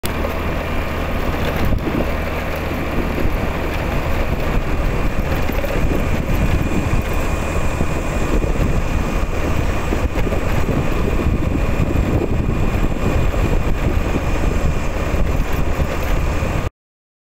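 Motor scooter riding along a paved road: wind rushing and buffeting over the microphone, mixed with the scooter's steady running and tyre noise.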